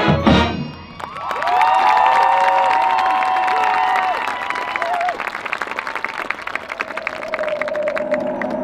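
A marching band's brass and percussion cut off a loud chord about half a second in. The stadium crowd then cheers and applauds; the cheering dies down after about four seconds while the clapping goes on. A soft held tone comes in near the end.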